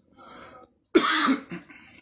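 A man coughs: a short breath in, then one loud, sudden cough about halfway through, trailing off into throat clearing.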